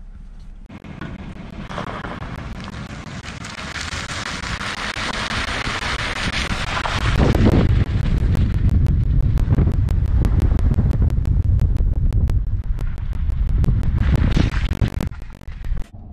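Wind buffeting the microphone of a camera held outside a moving pickup truck: a rush that builds over the first several seconds, then a loud, distorting low rumble until near the end.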